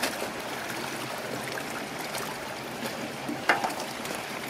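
Steady splashing and running water in a shallow hatchery raceway, stirred by people wading and working a seine net and dip baskets among trout fingerlings. One short, sharp sound stands out about three and a half seconds in.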